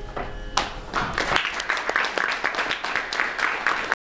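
Audience applause, starting with a few scattered claps and swelling to full, steady clapping from about a second in.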